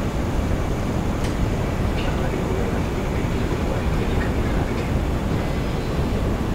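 A steady low rumble of background noise with faint, indistinct voices mixed in, and a few faint ticks.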